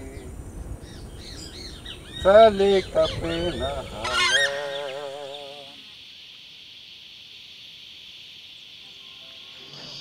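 Loud, honking bird calls with wavering pitch for about the first six seconds, with a sharp rising call about four seconds in. The calls give way to a steady, high insect drone.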